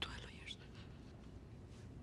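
A woman's soft, near-whispered words for about half a second, then quiet room tone with a faint low hum.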